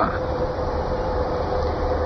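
Steady background noise with a faint constant hum-like tone, unchanging throughout: the recording's own noise floor.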